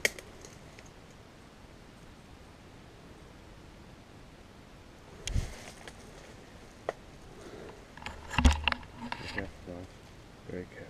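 Quiet background hiss broken by a few short knocks and rustles, the loudest cluster about eight and a half seconds in.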